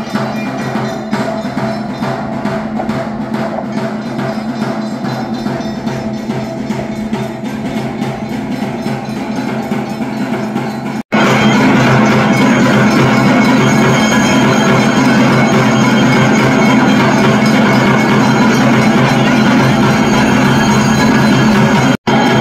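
Temple bells ringing in a rapid, continuous clangour with percussion, as during a pooja before the shrine. It gets sharply louder about halfway through.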